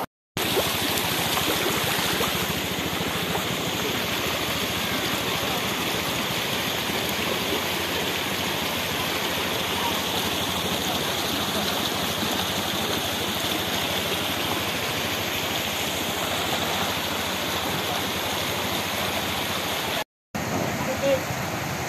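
Shallow stream fed by hot-spring outflow, rushing over stones in a steady, even wash of water noise.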